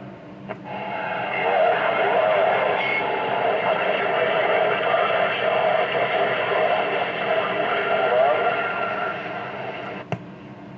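Stryker SR-955HP CB radio receiving skip on channel 19 through its speaker: a steady wash of static with wavering tones and garbled distant voices. It starts with a click about half a second in.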